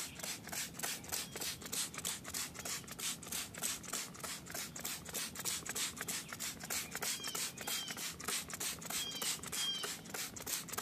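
Trigger spray bottle of glass surface cleaner squirted rapidly and repeatedly onto an alloy rim, about five short sprays a second, to soak off dirt before painting.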